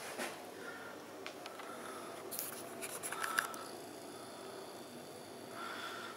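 Faint rubbing, scraping and a few small clicks of a phone being handled and turned around in a small, quiet room, over a faint steady high hum.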